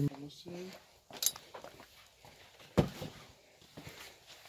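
Hard plastic CD case being handled, giving a few scattered clicks and one sharp knock just before three seconds in.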